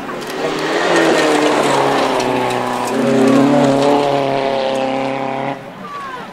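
Rally car engine running hard under load on a gravel stage as the car approaches, its note rising and shifting in pitch. The sound stops abruptly near the end.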